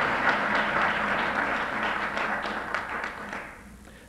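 Audience applauding, the clapping fading out after about three and a half seconds.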